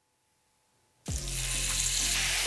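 Near silence for about a second, then a steady hiss of orange sauce sizzling as it is spooned over seared lamb chops in a hot cast-iron grill pan.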